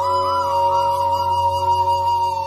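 Background music: a flute holding a melody line with small repeated ornaments over a steady drone.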